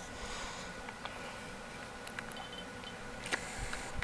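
Quiet room tone with a faint steady hum and a few soft ticks, then a click and a low knock about three and a half seconds in: handling noise as the camera is moved and loses focus.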